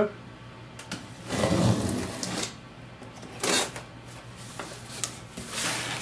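A cardboard box being opened and its foam packing handled: rustling and scraping in a few separate bursts, the longest about a second and a half in.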